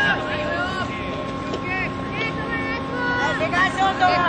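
Young baseball players calling out across the field: several short, drawn-out shouts, one after another, with a steady hum underneath.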